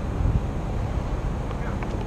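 Wind buffeting the microphone of a helmet-mounted camera, a steady low rumble, with a few faint clicks near the end.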